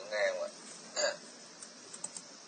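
A voice over an online voice-chat line: a few syllables at the start and one short, clipped vocal sound about a second in, then faint steady line hiss.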